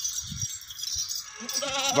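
A Beetal goat bleating once, a wavering call that begins about one and a half seconds in.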